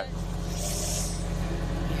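Playback of a muffled covert phone recording: a steady low rumble and hum with no clear words, and a brief burst of hiss about half a second in.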